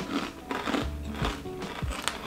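Crunching and chewing of chakri, a crisp fried spiral snack made from chickpea and urad dal flour, as several irregular crisp crunches, over background music with steady held notes.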